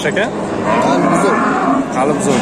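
A bull mooing: one long call that starts about a second in, rising and then falling in pitch, over the chatter of a crowd.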